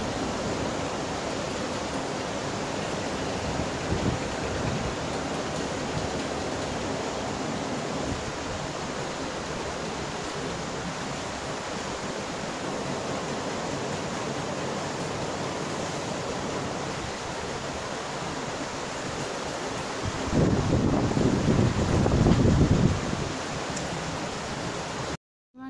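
A steady, even rushing hiss with no distinct events, with a louder low rumble for a couple of seconds near the end.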